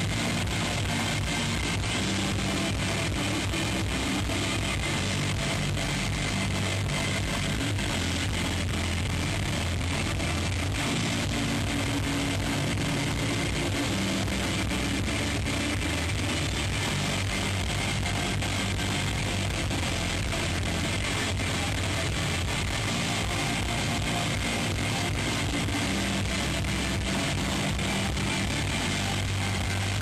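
Shoegaze rock band playing live: a dense, steady wash of electric guitars over a moving bass line.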